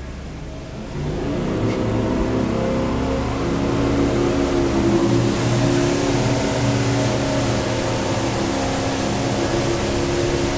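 Twin 350-horsepower outboard motors opened up from slow cruise. About a second in they get louder, and their pitch climbs for several seconds as the boat gets up on plane. They then run steadily at speed, with rushing water and air hiss building.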